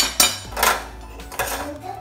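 Metal kitchenware clinking and clattering on a gas stove top as it is being wiped clean, several sharp knocks in under two seconds.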